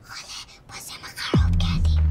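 Horror-trailer soundtrack: a whispered voice over a faint hiss, then about a second and a half in a quick downward pitch sweep that drops into a loud, steady deep low rumble.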